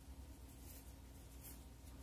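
Near silence: faint room hum with a few soft rustles of a crochet hook working cotton thread.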